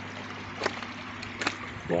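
Steady trickle of water running into a koi pond over a low, even electric hum from the pond pumps, with two brief clicks.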